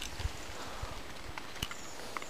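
A few dull, low knocks from a handheld camera being handled and a sharp click about 1.6 s in, over faint outdoor hiss, as a hand reaches into a wild rose bush to pick a hip.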